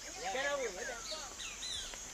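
Rainforest birdsong from a film soundtrack, heard through lecture-hall loudspeakers: a run of short arching and gliding whistled calls, fainter after the first second.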